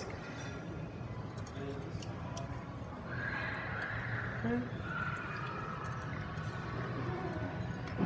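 Light clicks and taps of a utensil against a glass bottle and plastic funnel, over faint background voices and room hum.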